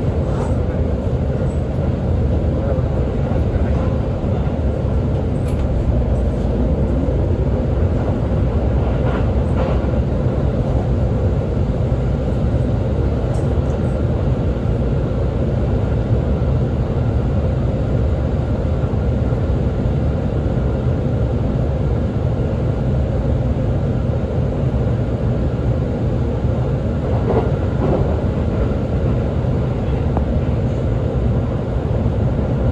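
Running noise of an E531-series electric train at speed, heard from inside the carriage: a steady rumble of wheels on rail, with a faint steady hum over it.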